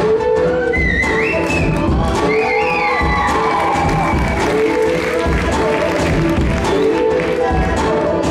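Live loop-pedal music: a beatboxed beat repeating about once a second under layered, looped vocal harmonies, with beatboxing into a cupped microphone over the top. High gliding sounds come through between about one and three seconds in.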